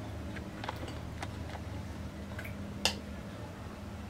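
Metal ladle clicking lightly against a glass bowl as dosa batter is stirred and scooped: several soft clicks, with one sharper click near the end, over a low steady hum.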